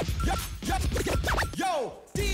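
DJ scratching a record on a turntable over a hip-hop beat: the vinyl is worked back and forth under the needle in quick rising and falling pitch sweeps. Near the end a long downward sweep trails off and the sound briefly drops out.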